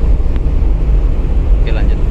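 Loud, steady low rumble on the open deck of a ferry underway, the wind at sea buffeting the microphone over the ship's drone. A faint voice is heard near the end.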